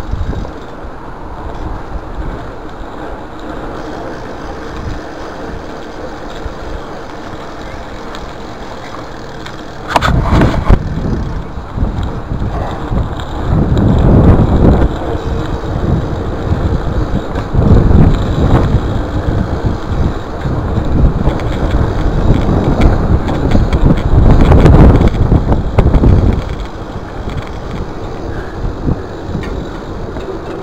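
BMX bike ridden over concrete with the sound picked up by a chest-mounted action camera: steady rolling noise, a sharp knock about ten seconds in, then loud, uneven rumbling and wind buffeting on the microphone through most of the rest.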